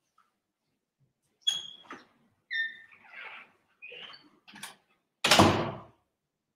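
Several short squeaks and clicks, some with a ringing pitch, then a louder noisy burst of under a second near the end. These are sounds of unseen movement about the room, such as a door.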